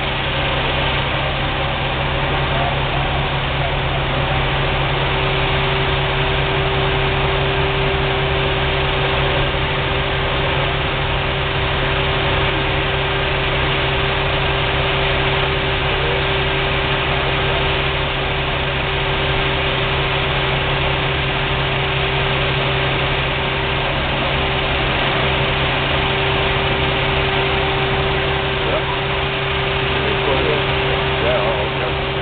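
Diesel engines of parked fire trucks running steadily at idle, a constant drone with a steady hum.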